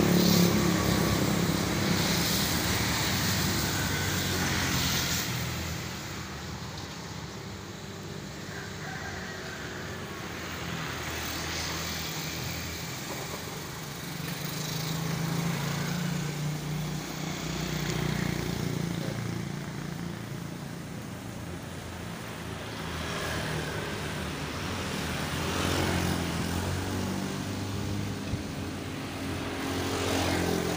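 Motor vehicle engine noise from passing traffic, a low rumble that swells and fades several times.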